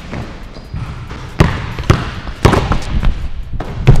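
Basketballs bouncing on a hardwood gym floor: about five sharp, irregularly spaced bounces, starting about a second and a half in, the loudest near the end.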